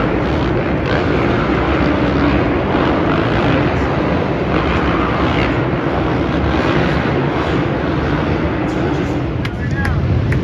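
Supercross dirt bike engines running as the bikes ride the stadium track, mixed with a steady din of voices.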